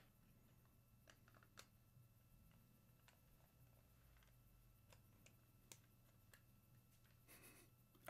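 Near silence: room tone with a faint steady hum and a few faint scattered clicks.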